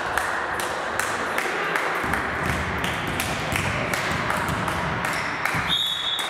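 Scattered hand claps and knocks echoing in a sports hall over a bed of background chatter, with a short, steady blast of a referee's whistle near the end.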